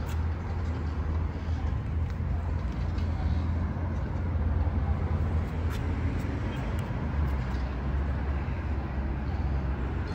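Harley-Davidson CVO Road Glide Limited's Milwaukee-Eight V-twin engine idling steadily, a low, pulsing rumble.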